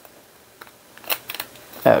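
Handheld corner-rounder punch clicking as it cuts the corner of a book-page strip: a few short sharp clicks, the loudest a little past a second in.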